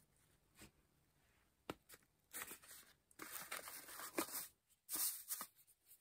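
A cardboard advent-calendar drawer pulled open with a click, then crinkly rustling and scraping of shredded paper filling as a hand rummages in it.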